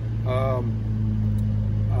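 A steady low motor hum, under a man's brief "um".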